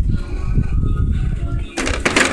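Low rumbling handling noise from the phone's microphone being moved while the ribs are carried, with faint background music. Near the end comes a brief rustling burst of noise.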